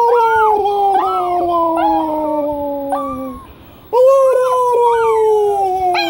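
A small dog howling: two long howls, each sliding slowly down in pitch, the second starting about four seconds in, with shorter rising-and-falling cries overlapping them.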